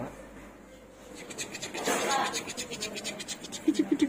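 Scratching and rubbing close to a phone's microphone as the phone is handled: a rapid run of small clicks from about a second in. A short vocal sound comes near the end.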